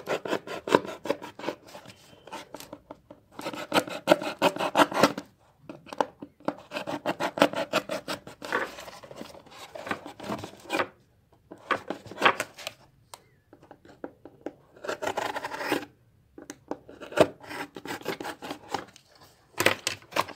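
Snap-off blade craft knife (radium cutter) cutting through a cardboard box, in bursts of quick scraping strokes separated by short pauses.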